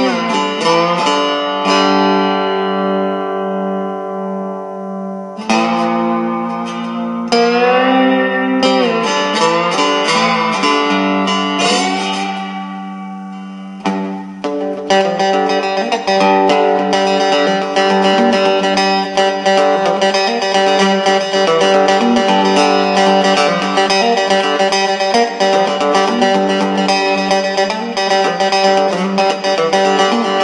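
Three-string all-wood cigar box guitar with hand-wound pickups being played: notes ring out and die away over a steady low droning string, some gliding in pitch. From about halfway the playing turns busier and continuous.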